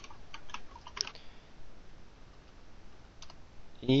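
Keystrokes on a computer keyboard: a quick run of taps in the first second or so, then a few scattered taps.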